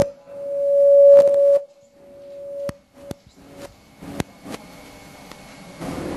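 Microphone feedback through the PA: a single steady howl that swells louder and cuts off, twice in the first two seconds and again near the end. Knocks and rubs of the handheld microphone being handled come in between. The mics are having technical problems.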